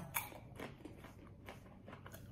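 Faint crunching as a mouthful of sweet snack mix (caramel popcorn, Chocolate Toast Crunch and vanilla Chex cereal) is bitten and chewed. A few crisp crunches, the clearest just after the start, then weaker ones.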